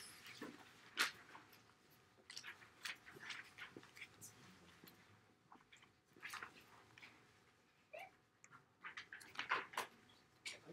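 Faint, scattered clicks and rustles of handling close to the recording device, with a short squeak about eight seconds in and a small cluster of clicks near the end.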